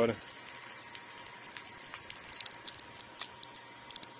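Garden hose jet, pressurised by an electric surface pump, spraying onto vegetable beds: a steady hiss of water hitting leaves and soil, with a scatter of sharp ticks in the second half.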